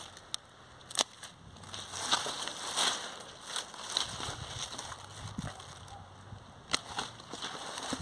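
Hand pruning shears cutting through dried pumpkin vines and stems: a few sharp snips, the clearest about a second in and near the end, with scratchy rustling of dry leaves and stems between them.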